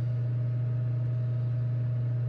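Space heater running with a steady low hum.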